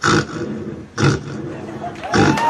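A boy's voice imitating a lion's roar into a handheld microphone: two short, rough roars about a second apart.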